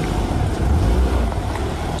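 Car driving slowly through muddy water on a potholed dirt street: a steady low rumble of the engine and tyres churning through the mud, heard close to the wheel.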